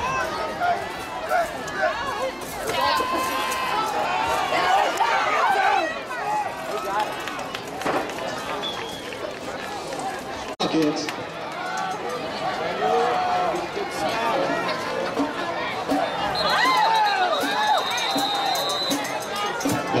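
Football crowd in the stands shouting and cheering, many voices at once, through a play. Near the end a referee's whistle sounds one long blast.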